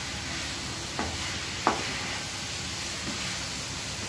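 Chicken pieces and pepper masala sizzling in a pan while a wooden spatula stirs them, with a couple of light knocks of the spatula against the pan about a second in.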